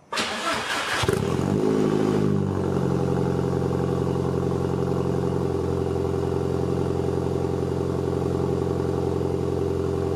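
Cold start of an Audi S3 8L's 1.8-litre turbocharged four-cylinder through a catless 76 mm exhaust with a single Simons muffler. The starter cranks for about a second, the engine catches with a brief rev flare, then settles into a steady idle.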